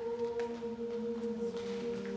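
A cappella vocal ensemble opening a song on one sustained note; about one and a half seconds in, the voices begin to split into a held chord.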